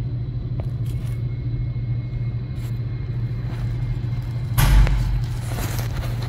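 A steady low hum from the car, with a few faint clicks and a short burst of handling noise about four and a half seconds in.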